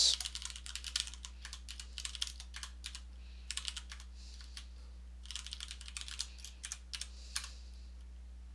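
Typing on a computer keyboard: quick runs of keystrokes with short pauses between them, over a low steady hum.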